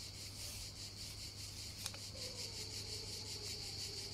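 A hand rubbing the dusty lid of an old metal tin can, with one small click a little before halfway. Behind it is a steady, pulsing chirring of insects, and a faint wavering tone comes in about halfway.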